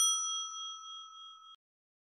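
A single bell-like ding chime sound effect, struck once with a clear ringing tone that fades for about a second and a half, then cuts off suddenly.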